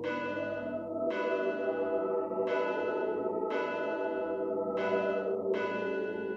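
A bell tolling slowly, struck roughly once a second, each strike ringing out and fading over steady low sustained tones.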